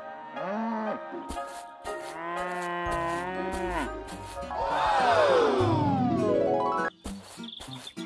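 Cartoon cow mooing: a few short moos, then a long drawn-out moo about two seconds in, then a moo that slides down in pitch while a rising tone climbs beneath it. About a second before the end the mooing stops and short clicks follow.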